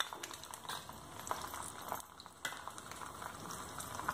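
Cumin seeds and green herb paste sizzling in hot oil in a small pan for a tempering: a low, steady frying hiss with small crackles, dipping briefly about halfway through.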